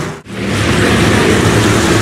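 Pack of dirt-track stock car engines running steadily as the field circles at reduced speed under caution. The sound drops out briefly about a quarter second in, then the engine drone resumes.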